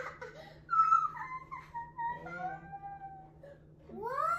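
A young child's voice: a laugh, then drawn-out, wavering wordless vocalizing in high tones, loudest about a second in.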